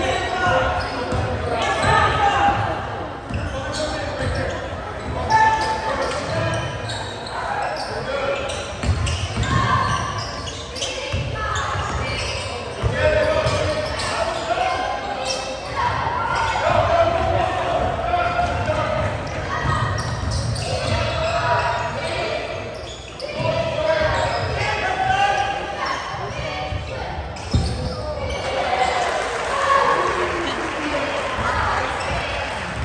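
Basketball bouncing on a hardwood gym court during play, with spectators' voices and shouts throughout, echoing in a large hall.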